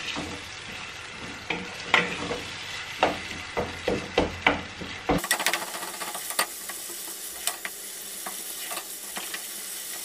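A wooden spoon stirring and mashing mackerel in tomato sauce in a non-stick pot, knocking and scraping against the pan as the food sizzles. The knocks come thick and fast for the first five seconds. After that the sound turns suddenly to a steady frying sizzle with only an occasional tap.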